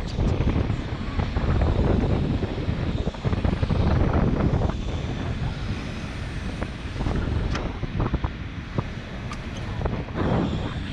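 Wind buffeting the microphone over the low, steady running of the bucket truck's engine, with a few light clicks near the end.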